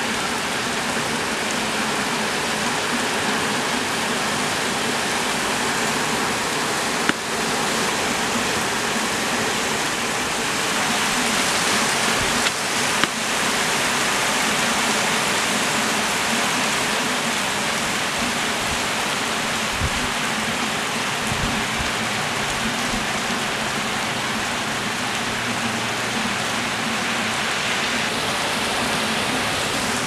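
Heavy rain pouring down onto a paved street and building walls in a storm, a dense steady hiss, with a few sharp clicks about seven and thirteen seconds in.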